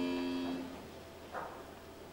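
A held note from the opera performance, one steady pitch, dies away within the first second. A hushed pause follows, broken once by a faint brief sound.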